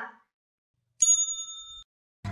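A single bright, bell-like ding about a second in, ringing for under a second before it cuts off abruptly. It is an edited-in transition sound effect between video segments.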